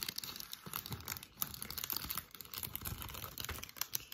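Clear plastic packaging bag crinkling and rustling, with many small crackles, as a phone cover is pulled out of it.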